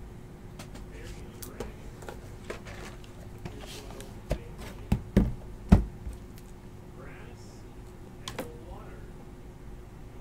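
Cardboard trading card box handled and set down on a tabletop: a series of knocks and taps, the loudest a cluster about five to six seconds in, with a lighter knock near eight and a half seconds.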